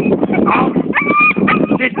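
Dog giving a run of high-pitched whining yelps, each short and held at one pitch, over a rough, noisy lower sound. These are typical of a protection dog protesting at being told to release the bite.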